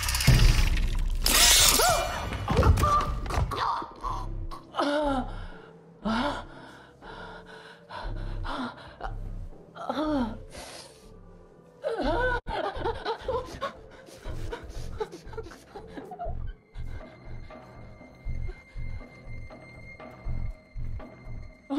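Horror film soundtrack: a loud crashing hit in the first few seconds, then a string of short strained gasps and cries over low, pulsing score music.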